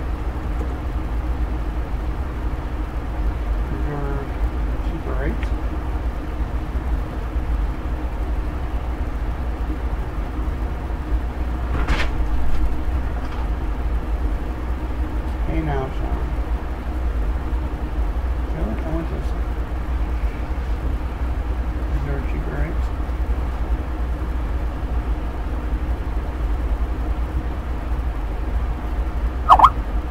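A steady low rumble and hiss, with faint, indistinct voices coming through now and then and a sharp click about twelve seconds in.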